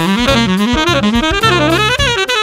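Nexus Select saxophone playing a fast jazz line of short connected notes that move up and down, climbing near the end.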